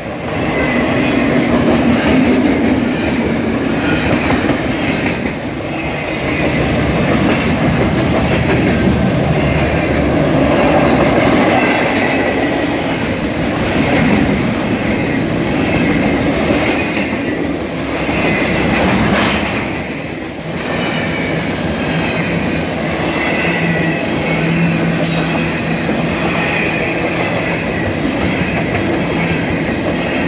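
Freight cars of a long intermodal train rolling past close by: a steady rumble of steel wheels on rail, with rhythmic clicking over the rail joints and a thin, high wheel squeal that is strongest in the second half.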